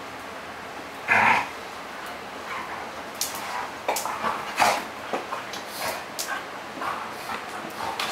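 A dog gives one short bark about a second in, then a run of short clicks and scuffles as two dogs play together.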